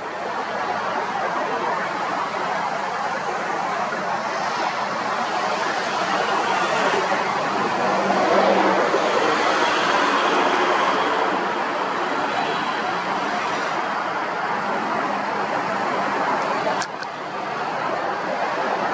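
Road traffic noise, a steady rush that swells as a vehicle passes around the middle, with a single sharp click near the end.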